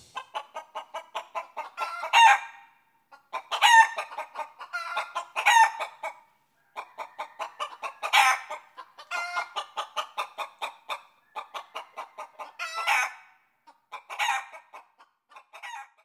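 A hen cackling: runs of quick, short clucks, each ending in a louder squawk, repeated several times with brief pauses.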